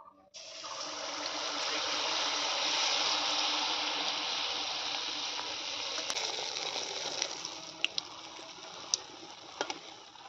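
Jaggery pitha batter (rice flour, semolina and date-palm jaggery) hitting hot oil in a kadai: a sudden loud sizzle that starts just after the beginning, swells for a few seconds and then slowly settles as it fries. A few light metal clicks of a spatula and ladle against the pan come in the second half.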